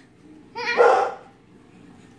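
A young child's short excited shout, about half a second long, coming a little after half a second in.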